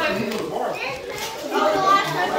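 Indistinct, overlapping voices of children and adults chattering, loudest near the end.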